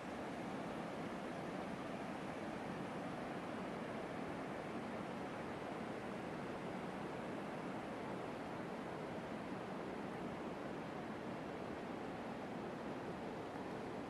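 Steady outdoor rushing noise, even in level throughout, with no distinct events.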